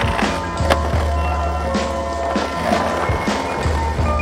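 Skateboard working a concrete ledge, with a sharp clack of the board less than a second in and scraping along the ledge later, over a music track.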